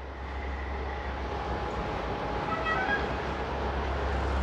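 Steady low hum under background room noise, with a faint, brief run of high notes a little before three seconds in.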